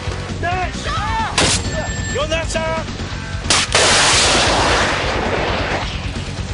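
Gunfire during urban-combat training: a few sharp rifle shots in the first half amid shouted commands, then a much louder burst of noise a little before four seconds in that trails off over about two seconds, all over background music.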